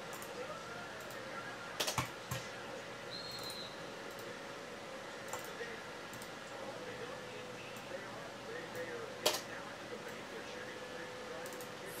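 Computer mouse clicks: two sharp clicks close together about two seconds in and one more later, over a steady low hum with a faint held tone.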